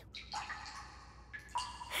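Faint cartoon sound effect of water dripping from a leak, a few soft drops.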